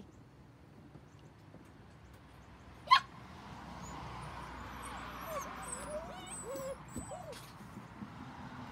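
Eight-week-old standard poodle puppies whimpering and whining in short, scattered high cries, mostly in the second half, over a rising rustle. A single sharp click about three seconds in is the loudest sound.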